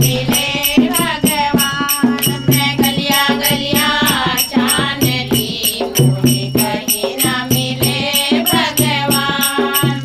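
A Hindi devotional nirgun bhajan: a singing voice in two long melodic phrases over a quick, steady percussion beat and a low sustained drone.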